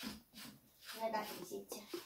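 Quiet, indistinct speech, a girl's voice, with a little handling noise.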